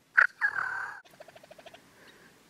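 A Merriam's wild turkey gobbler gobbles once: a loud, rattling call about a second long that starts sharply and rolls downward. It is followed by a fast, even run of soft notes.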